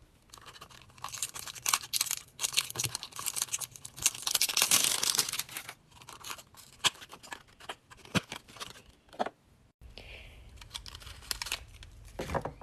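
Cardboard and plastic toy packaging crinkling, crackling and tearing as it is opened by hand, in a run of sharp crackles with a denser stretch of tearing about halfway through. The handling stops shortly before the end.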